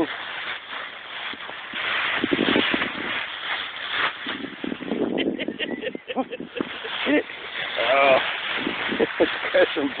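Dry fallen leaves rustling and crunching in a continuous scuffle as a Weimaraner mix puppy pounces and digs through a leaf pile, with a run of short crackles about halfway through. Voice-like sounds break in briefly a couple of times.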